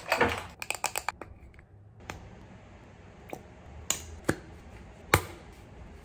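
Small objects being handled on a shelf: a quick run of clicks and taps in the first second, then single sharp clicks about once a second over a faint low hum.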